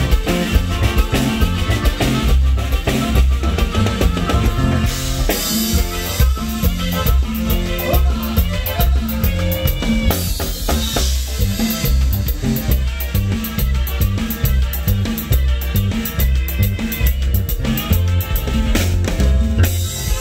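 Loud Latin dance music with a drum kit keeping a steady beat over a heavy, repeating bass line.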